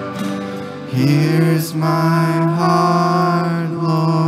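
A worship band sings a slow contemporary worship song, the voices holding long sustained notes over the accompaniment. A new sung phrase comes in about a second in.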